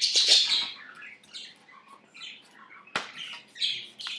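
Pet budgerigars chattering and chirping in short high squawks, loudest at the start, with a single sharp click about three seconds in.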